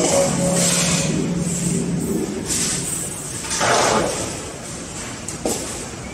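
Balls running along the metal tracks of a large rolling-ball kinetic sculpture, giving a low hum and several rushing, rumbling swells with a sharp click about five and a half seconds in, echoing in a large hall.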